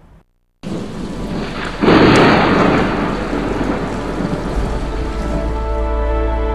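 Thunderstorm sound effect: steady heavy rain starts after a brief silence, and a loud thunderclap cracks and rumbles about two seconds in. Music comes in softly near the end.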